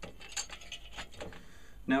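Light metallic clinks and rattles as a snare drum's metal hoop is settled into place over the bottom head, knocking against the drum's hardware, several small clicks a second.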